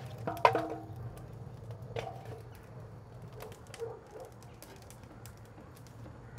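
Split firewood dropped into a stone tandoor's wood fire: a loud knock with a short ring about half a second in and a smaller knock at about two seconds. Between them the fire crackles with small, sharp pops.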